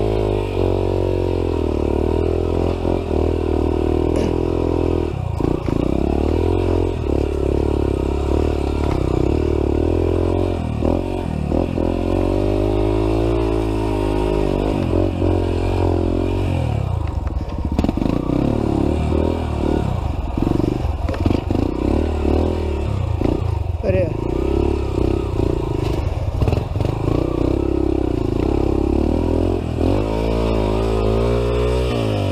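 Off-road motorcycle engine being ridden hard on a dirt trail, its revs rising and falling continually with throttle and gear changes. Occasional knocks and rattles come from the bike over rough ground.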